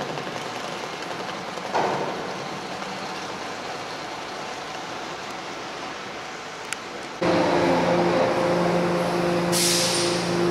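Open-air harbour noise with a dull thump about two seconds in. About seven seconds in, a sudden cut brings a louder, steady machinery hum of several low tones inside a ferry's enclosed vehicle deck.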